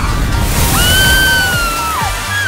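A steamy hissing sound effect of the mouth-fire being doused, joined about three-quarters of a second in by a high held whistling tone that dips at the very end, over background music.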